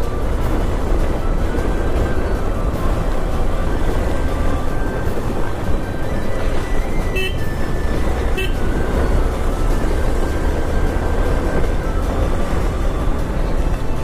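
Motorcycle riding noise, a steady mix of engine and road sound, with a vehicle horn tooting briefly twice around the middle.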